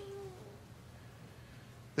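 A pause between sentences: a faint, brief tone in the first half-second, then quiet room tone.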